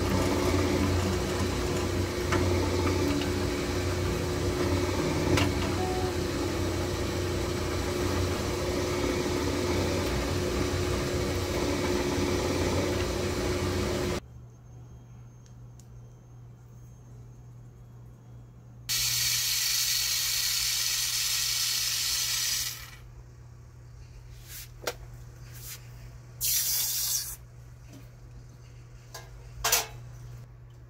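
Rolling mill running steadily as a silver strip is fed between its steel rollers, then stopping abruptly about halfway through. After that a low hum remains, with a long hiss lasting a few seconds and a shorter hiss near the end.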